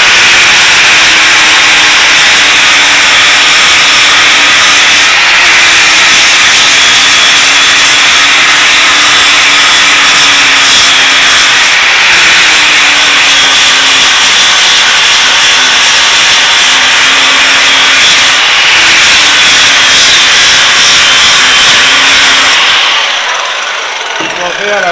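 Angle grinder with a solid-backed BCM fibre disc grinding the face of a damascus steel bar flat, running loudly and continuously, its motor note wavering slightly as it is pressed into the steel. It stops near the end.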